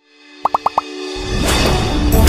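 Intro music for an animated title: four quick rising pops in a row about half a second in, then music with a heavy bass swelling in and getting louder.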